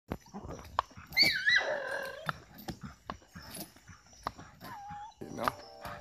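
American pit bull terrier whining: a high-pitched, wavering whine that falls in pitch about a second in, and a shorter one near the five-second mark, over repeated sharp clicks and knocks as the dog jumps about.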